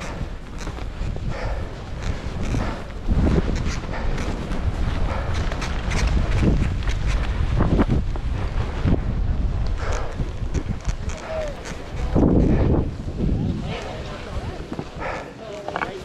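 Wind rumbling on the microphone while skis hiss and swish through snow in a series of turns, with voices in the background.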